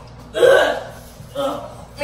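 Two short vocal outbursts from a person: a loud one about half a second in, then a softer one about a second later.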